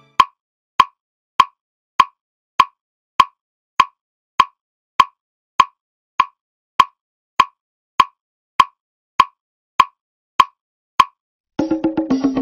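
A steady series of short, pitched ticks, evenly spaced at a little under two a second, with silence between them. Music comes in near the end.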